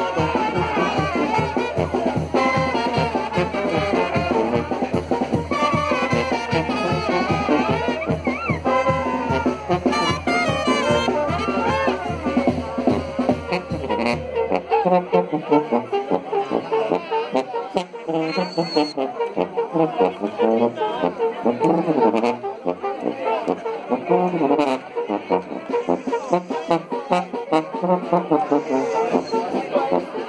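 Brass band playing dance music, trumpets and trombones carrying the tune. A steady low beat runs under it for the first half, then drops out about halfway through, leaving the horns.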